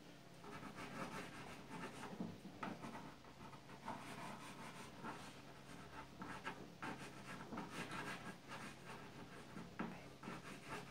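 Faint scratching of a black drawing stick on a canvas panel, in quick, irregular strokes.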